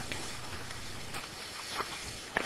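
Faint steady hiss with no distinct events, just a couple of tiny ticks.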